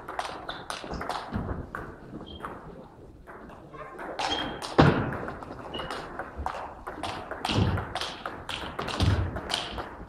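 Table tennis rally: the celluloid ball clicks sharply off the bats and the table in quick succession, echoing in a sports hall, with brief shoe squeaks on the wooden floor and heavy footfalls thudding in the second half.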